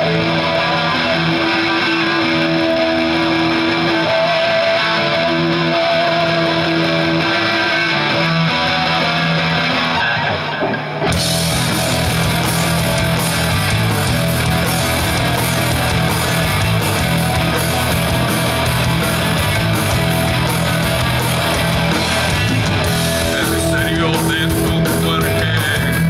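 Live heavy rock band: electric guitars play a riff on their own for about the first eleven seconds, then drums and cymbals crash in and the full band plays on, loud and steady.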